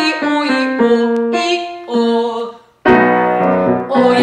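Grand piano playing a vocal warm-up figure: a run of single notes, a short break, then a loud chord about three seconds in that gives the starting pitch. Near the end, voices start singing the exercise on an open vowel.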